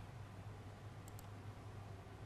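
Faint steady low hum with a few soft clicks, one near the start and two close together about a second in.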